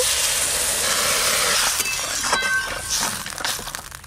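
Water poured from a clay pot into a hot aluminium karai of fried kohlrabi and red lentils, hissing and splashing as it hits the pan. The hiss starts at once, holds for about three seconds and fades near the end.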